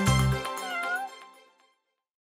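Closing chord of background music hitting and ringing out as it fades, with a single cat meow about three-quarters of a second in.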